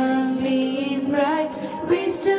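A schoolgirl singing a welcome song in long held notes.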